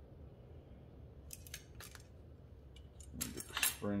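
Small steel door-regulator parts, a spline shaft and its coil spring, clicking and clinking against each other in the hands as they are fitted together. It is quiet at first, then comes a run of light metallic clicks from about a second in, thickest near the end.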